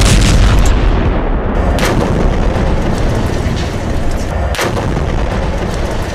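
Explosions: a heavy blast with a deep rumble right at the start, then sharp bangs about two seconds in and again near the five-second mark, over continuous rumbling.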